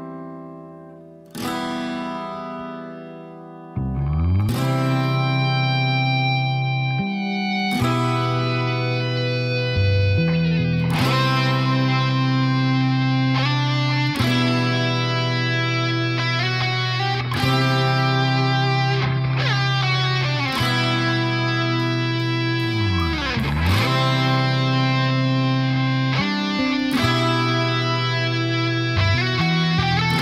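Instrumental rock intro with no vocals: plucked guitar notes ring out and fade. From about four seconds in, a fuller sustained band sound takes over, with low notes that slide down and back up several times.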